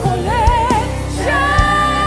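Nigerian gospel worship music: sung vocals holding long notes with a wide vibrato over a steady bass line and a drum beat.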